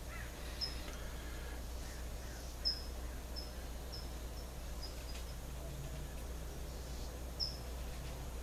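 A small bird chirping now and then: a scattered run of short, high single chirps, several close together in the middle and one more near the end, over a steady low hum.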